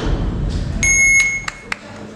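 A single electronic beep, a steady high-pitched tone lasting under a second, followed by a few sharp clicks.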